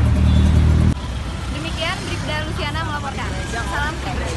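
A car engine idling close by, with a loud steady rumble that cuts off abruptly about a second in. Then speech over a fainter background of street traffic.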